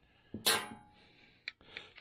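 A metal hand tool clinks once against metal with a short ring, followed by a small tick and light handling noise near the end.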